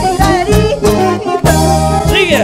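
Live band music: a drum kit keeping a steady beat under electric bass and a melodic lead line.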